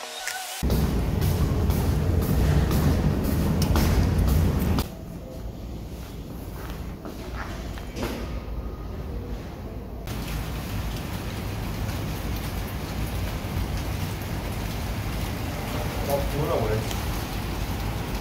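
Steady rain falling outdoors, an even hiss. For the first four seconds or so a louder, deeper noise lies over it, then drops away abruptly.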